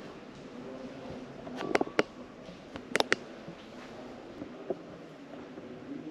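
Low, steady room murmur in a reverberant space, broken by two quick pairs of sharp clicks about a second apart, with one fainter tick later.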